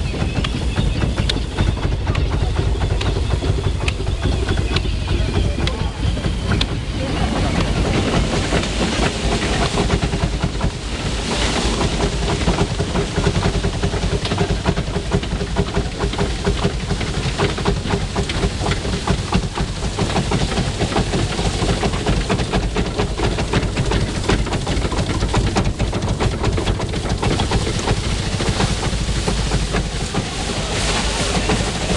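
Belt-driven stationary threshing machine running at work: a steady low rumble with continuous fast rattling and clatter from its drive and straw walkers as straw is shaken through and thrown out.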